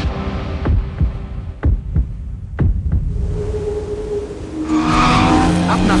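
Film sound effects: a deep rumble with heavy double thumps like a heartbeat, three pairs about a second apart. Near the end a car's engine and tyre squeal come in loud.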